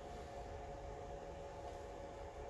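Quiet, steady indoor background hum with a few faint constant tones, and no distinct events.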